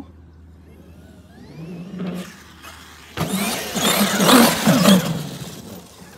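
Traxxas XRT brushless electric RC monster truck on sand paddle tires. A faint rising motor whine comes first as it drives off at a distance. From about three seconds in there is a loud burst of drivetrain noise and sand spray as it accelerates hard and roosts sand, easing off near the end.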